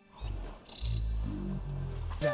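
A few short, high bird chirps about half a second in, over a low rumble on the microphone.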